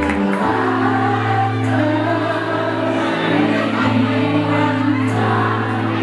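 Rock band playing live, with a woman singing over long held bass notes and electric guitar chords.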